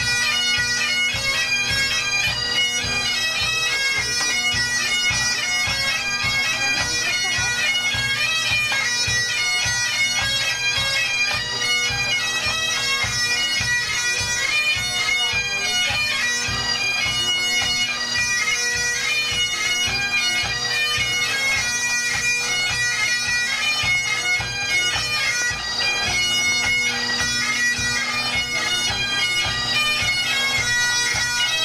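Pipe band playing: Great Highland bagpipes sounding a march tune over a steady drone, with the band's drums beating time.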